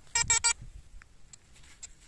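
Metal detector sounding three short beeps in quick succession on a buried metal target, each one the same high pitched tone.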